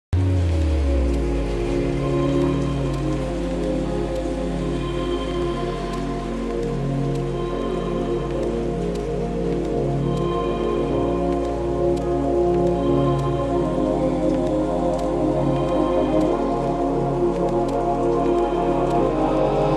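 Intro of an electronic track: sustained synth chords over a low bass note that changes every few seconds, with a light, rain-like patter layered on top and no vocals.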